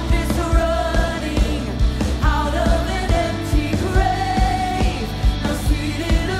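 A live worship song: a woman sings the lead melody into a microphone over a full band, with the drums keeping a steady beat.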